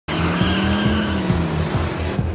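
Animated race car sound effects: an engine running with tyre squeal, starting abruptly, over a music track with a steady beat.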